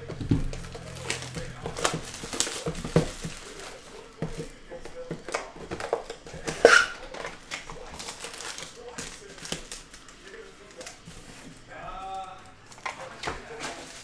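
Plastic shrink wrap torn off a trading-card hobby box and the foil card packs inside handled, with crinkling and sharp crackles throughout.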